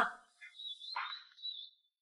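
Faint high-pitched bird chirping, a thin wavering note with one short chirp about a second in.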